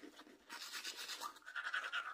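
Manual toothbrush scrubbing teeth in rapid back-and-forth strokes, picking up again after a short pause near the start.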